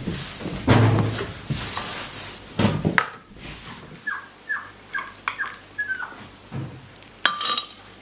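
Food going into a glass blender jar: a few soft, dull thuds as soft blocks of tofu drop in. Between them come a run of short clicks and light chimes against the glass, then a brighter ringing clink near the end.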